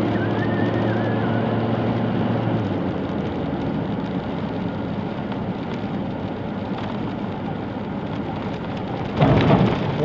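A vehicle driving on a dirt road, heard from inside the cab: a steady rumble of tyres on the dirt surface, with an engine hum that drops away about three seconds in.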